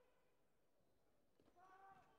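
Near silence, with a faint distant voice calling out, held on one pitch, in the last half second.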